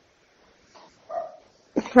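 A pause on a phone call: the line is almost quiet, with one short, faint pitched sound in the background about a second in and a voice starting just before the end.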